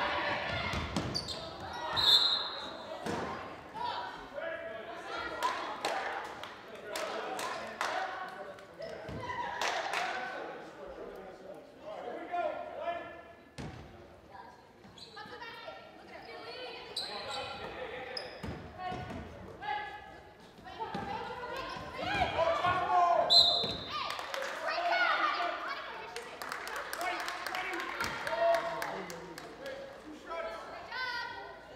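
Live basketball game in a reverberant gymnasium: the ball bouncing on the hardwood court amid players' and spectators' voices. Two brief shrill referee's whistle blasts, about two seconds in and again about two-thirds of the way through.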